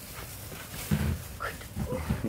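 Short wordless vocal sounds, laughter-like, beginning about a second in, with a brief high rising squeal in the middle.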